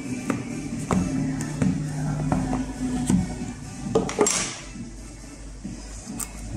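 Background music with a steady melody, over light clicks and taps from handling a smartphone's cardboard retail box. About four seconds in there is a brief scrape as the box is opened.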